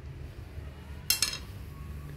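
A thin stick knocking against a plastic basin: one short, sharp double clack about a second in.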